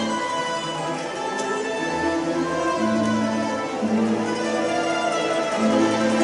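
A mandolin orchestra of mandolins, mandolas, guitars and double bass playing a sustained passage of long held notes, which on mandolins are sounded as tremolo.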